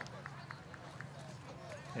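Faint open-air field ambience at a football game: distant, indistinct voices over a low hiss, with a few light ticks.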